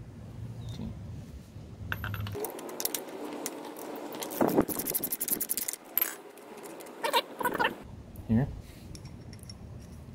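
Small steel hardware clinking and rattling as the nut, washer and long through bolt of a motorcycle kickstand/engine-mount bracket are handled and worked free, with a dense run of quick metallic clicks through the middle few seconds.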